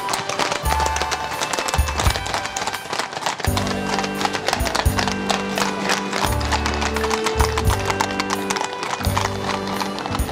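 Several horses' hooves clip-clopping on a wet tarmac street at a walk and trot, many overlapping hoof strikes. Music with long held notes joins in about three and a half seconds in.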